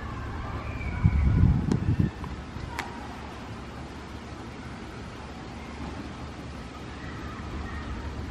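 Steady low outdoor rumble, louder for about a second starting a second in, with two faint sharp clicks soon after.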